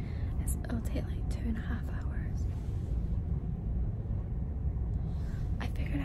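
Steady low rumble of the ferry MV Loch Seaforth under way. A woman whispers over it for the first couple of seconds and again near the end.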